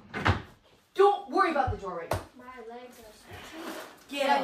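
Knocks and bumps from a bed frame with built-in drawers being shoved and lifted: a short knock near the start, then a low thud and a sharp bang about two seconds in. Voices, including laughing, over and between the knocks.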